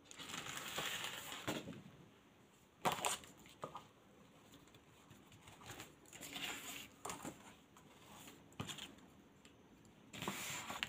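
Paper being handled on a tabletop: rustling and sliding as a sheet is brought out and laid down, with one sharp tap about three seconds in and a few lighter ones later.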